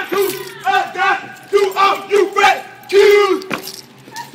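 A group of men chanting in unison: short shouted calls, each held on one pitch and then dropping off, repeating in a quick rhythm.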